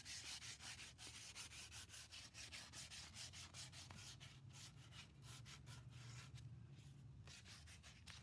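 Fabric-backed sandpaper strip pulled back and forth, shoe-shine style, around turned wooden chair legs to distress the black chalk paint: faint, quick, irregular rubbing strokes that thin out near the end.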